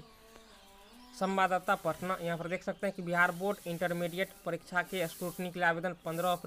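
Speech only: a man talking in Hindi, starting after a pause of about a second.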